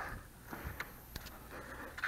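The metal door of a Bradley electric smoker being opened: a few faint clicks and a soft knock.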